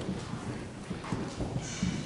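Children's footsteps and shuffling as they walk up and settle onto the floor: irregular soft thumps and scuffs.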